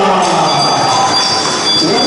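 Arena crowd cheering and clapping. It begins under the tail of the ring announcer's long, drawn-out call over the PA, which dies away just after the start. A thin, steady high tone runs through the noise.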